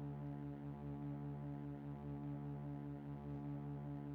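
Quiet ambient background music: a low chord held steady as a drone, with a slight pulsing and no beat.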